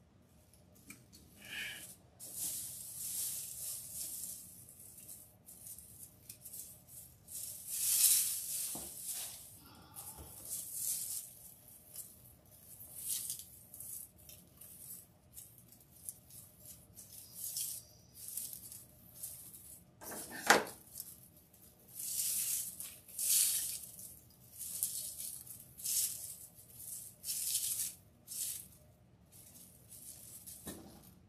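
Dry raffia strands and deco mesh rustling and crackling as they are handled, in irregular bursts with short pauses between, and one sharper crunch about two-thirds of the way through.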